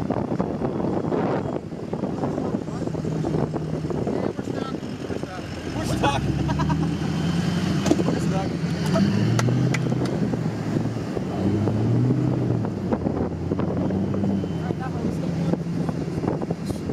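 Pickup truck driving slowly along beach sand, heard from the cab with the window open: steady engine and tyre noise, with people's voices outside.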